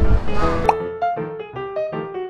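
Background music with a bouncy melody of short keyboard notes. Street noise runs under it at first and cuts off abruptly under a second in, with a short rising pop at the cut.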